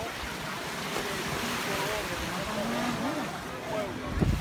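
Beach ambience: gentle surf washing on the shore, with distant voices of people in the water.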